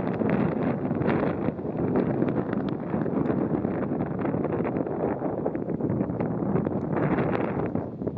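Steady wind noise buffeting the microphone outdoors, an even rushing with no distinct events.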